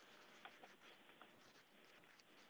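Near silence: faint room tone with a few faint small ticks.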